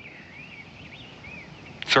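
Faint bird chirps: a few short, rising-and-falling whistles over a quiet outdoor background.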